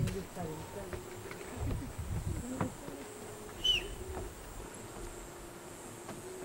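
A flying insect buzzing close by, a steady drone that wavers slightly in pitch, with low rumbling noise in the first few seconds and one short, high, falling chirp about halfway through.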